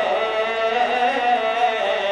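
A noha, a Shia lament, chanted by a male reciter in long, drawn-out, slightly wavering notes.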